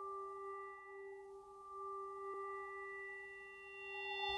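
A faint, sustained chime-like ringing tone with several steady overtones, slowly dying away.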